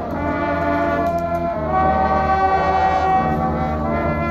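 High school marching band playing, the brass holding long chords that change about a second and a half in and again near the end.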